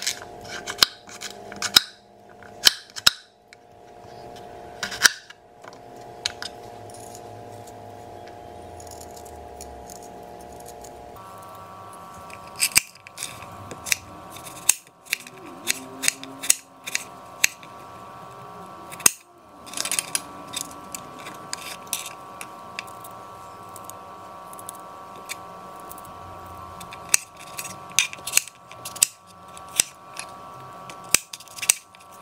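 Chef's knife chopping celery, lemon and cucumber on a plastic cutting board: sharp knocks of the blade on the board in irregular runs, with pauses between. A steady hum runs underneath.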